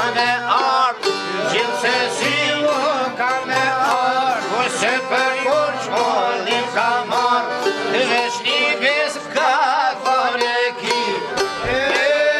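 Albanian folk ensemble playing a lively instrumental passage: çifteli and sharki plucking the melody together with violin and accordion, over the beat of a frame drum.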